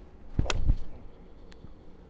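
Golf iron swung down and striking a ball off an artificial turf hitting mat: a single sharp crack about half a second in.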